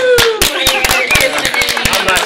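A small group of people clapping, a mock standing ovation, with voices calling out over the claps and one long call falling in pitch at the very start.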